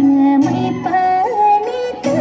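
A recorded song plays as dance music: a high singing voice holds long notes, stepping and sliding between pitches, over an instrumental backing.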